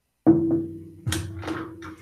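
Guitar strummed twice, about a second apart, its open strings left ringing and fading after each strum.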